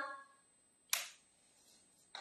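A single short, sharp click about a second in, with a brief fading tail, after the end of a woman's voice trails off; otherwise near silence.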